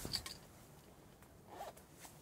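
A zipper being pulled, in a short run at the start and a briefer one near the end.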